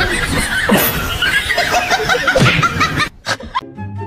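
Music with people laughing and snickering over it. The sound drops away abruptly about three seconds in.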